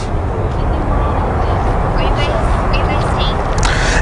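Steady outdoor background noise picked up by a live field microphone: an even low rumble and hiss with no rhythm, with a few faint distant voices in the second half.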